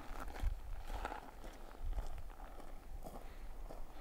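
Footsteps of a person walking, a series of soft steps at an uneven pace.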